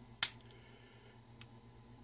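A sharp metallic click about a quarter-second in, then a faint tick, as a key is tugged in a Paclock padlock's keyway. After a bump attempt the key is really hard to pull out.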